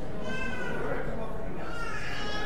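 A young child's high-pitched cry, wavering and falling, about a second long, followed near the end by a second one, over the murmur of people chatting.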